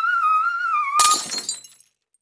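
A woman singing a very high, wavering whistle-register melody. About a second in, a sudden glass-shattering crash cuts the note off and rings away within about a second.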